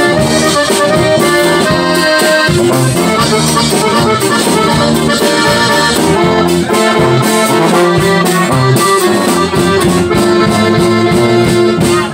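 Live norteño conjunto music: a button accordion carries the melody over a tuba bass line, playing without a break.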